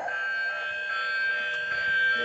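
Musical Bump 'n' Go Bubble Train toy's electronic sound chip playing a steady, held sound of several pitches at once through its small speaker, a siren-like tone that stays level throughout.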